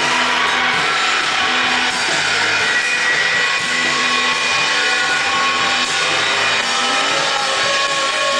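A live surf-rock band playing loudly: electric guitars, bass guitar and drum kit, with a bass line moving in steps under held guitar notes.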